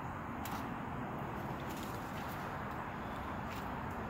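Steady low rushing noise with a few faint clicks.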